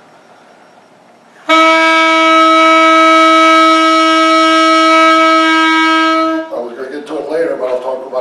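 Alto saxophone playing one long, steady, loud note for about five seconds, full of overtones, starting abruptly about a second and a half in. A man's voice follows once the note stops.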